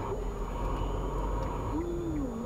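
A vehicle's steady low running rumble with a constant hum. A voice comes in briefly near the end.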